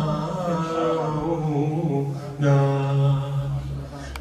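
A man chanting a slow, melodic recitation in long, wavering held notes, with a short break about two seconds in before the next phrase starts louder.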